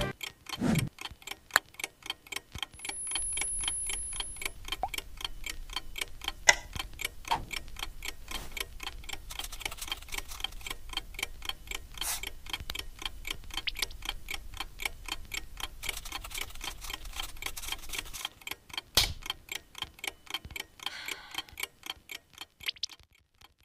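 A clock ticking steadily, with a faint low hum under it for most of the stretch and a few louder single clicks among the ticks.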